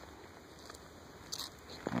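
Quiet outdoor background noise with no distinct source, broken by one short hiss a little over a second in; a voice starts at the very end.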